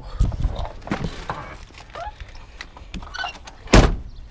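Clicks, rustling and knocks of a person moving about and climbing out of a car's driver's seat, with one loud thump near the end.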